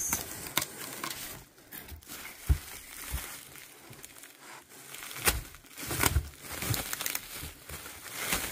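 Bubble wrap crinkling and rustling as a wrapped item is lifted from a cardboard box and handled, with a few sharper clicks and knocks.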